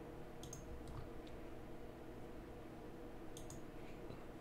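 A few quiet computer mouse clicks, some in quick pairs, over a faint steady hum.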